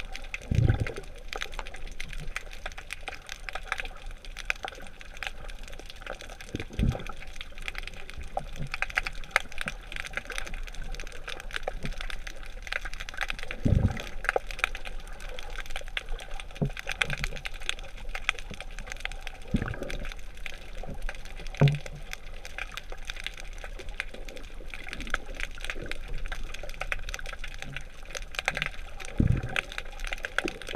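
Underwater ambience heard through a camera housing: a steady fine crackling, with a short low rush of exhaled bubbles from a diver five times, every six to ten seconds.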